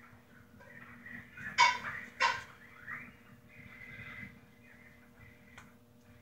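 Hands working hair and elastic hair ties into a ponytail: soft rustling, with two brief, louder rustles about a second and a half and two seconds in. A faint steady hum sits underneath.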